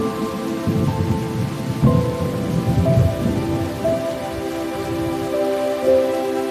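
Steady rain with a low rolling rumble of thunder that swells about half a second in and fades out about five seconds in, under slow soundtrack music with long held notes.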